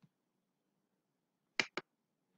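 Computer mouse button double-clicked: two quick sharp clicks near the end, opening a text box for editing.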